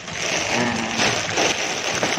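Plastic courier polybag crinkling and rustling loudly as it is gripped and moved close to the microphone.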